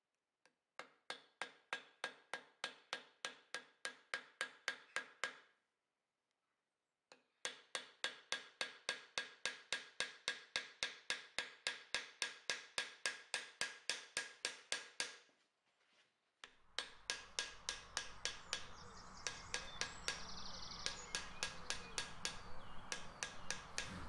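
Small hammer striking a rivet set to peen copper rivets joining a forged stainless steel handle to a hammered copper bowl. Quick, light metallic strikes come about four a second, in two runs with a short pause between. Near the end, fainter taps continue over a steady hiss.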